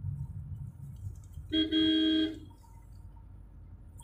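A car horn sounds once, a single steady tone lasting under a second about a second and a half in. It is heard from inside a moving car, over the low rumble of the engine and road.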